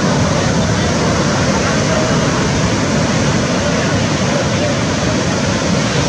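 Breaking surf and whitewater washing around the wading fishermen, a steady dense rush, with indistinct voices of the crew mixed in.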